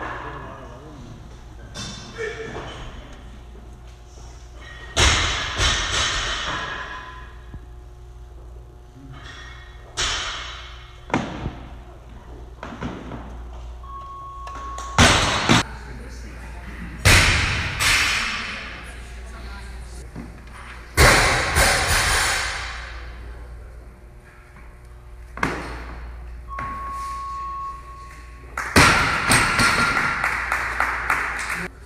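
Loaded barbell with bumper plates dropped onto a wooden lifting platform several times, each heavy thud ringing out with a long echo in a large hall, with voices in between. Twice a steady beep lasting about a second sounds.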